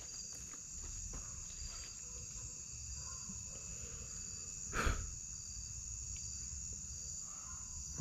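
Steady high-pitched chorus of night insects chirring in dense vegetation. A single sharp knock sounds about five seconds in.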